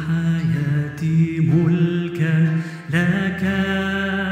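A man singing a slow Arabic worship song into a microphone over acoustic guitar, holding long notes and gliding between them, with a short breath just before the last phrase.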